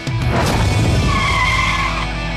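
Cartoon sports-car sound effect: a rushing burst as the car comes down, then a tyre screech held for about a second as it skids to a stop, over background rock music.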